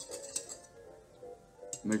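Wire whisk stirring water in a bowl, its wires clicking against the bowl in a quick run of taps over the first half-second or so. Background music plays underneath.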